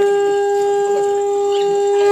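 A conch shell (shankha) blown in one long, steady, unwavering note with bright overtones, the ceremonial call of a Hindu household puja.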